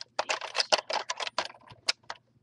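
Plastic Lego pieces clicking and rattling as they are handled, a quick irregular run of sharp clicks, about six a second.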